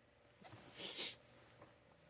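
A single short, sharp sniff through the nose, about a second in.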